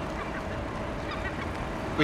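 Steady outdoor background rumble with a faint hum as a car approaches slowly across open tarmac.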